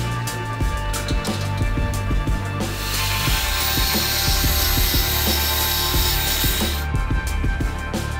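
Electric jigsaw cutting through aluminium checker-plate sheet, running for about four seconds from about three seconds in and stopping near the end, over background music.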